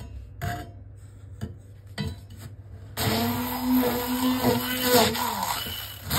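Hand-held immersion blender running in a stainless steel beaker, blending sugar with lemon juice and vanillin to refine the sugar's grain. A few light knocks come first; the motor starts about halfway in with a steady whirr and its pitch drops as it winds down near the end.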